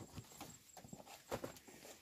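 Sweet potatoes knocking against one another as they are picked up from a pile and dropped into a sack: a few irregular dull knocks, the loudest about a second and a half in.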